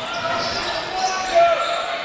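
Live game sound in a basketball hall: players' and spectators' voices echoing, with a basketball being dribbled on the court.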